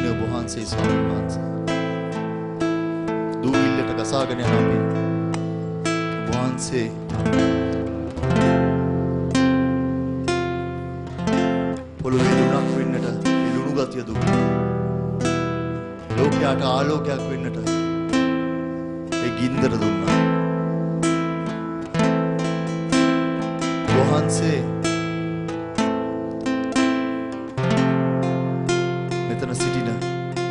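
Music: strummed acoustic guitar chords, changing about every two seconds, with a man's voice over a microphone.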